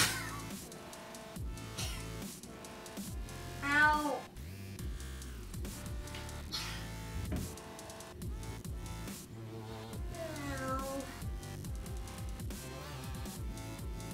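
Dubstep-style electronic music with a steady beat. Over it a boy lets out several drawn-out cries of pain that fall in pitch, the loudest about four seconds in.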